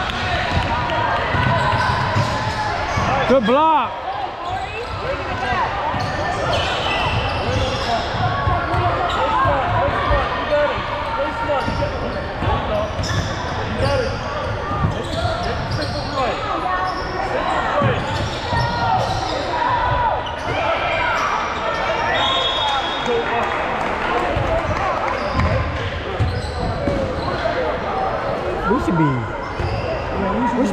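A basketball game in a gym: a basketball bouncing on the court under steady, overlapping voices of players and spectators, with no single clear speaker.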